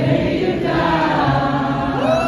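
Live song performance: a sustained sung vocal, with a choir-like sound, over steady low accompaniment, with no words heard.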